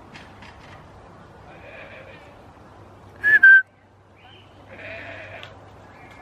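A goat bleats once, short, loud and high-pitched, a little past the middle.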